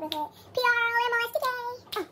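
A boy singing short phrases in a high voice, with two held notes in the middle.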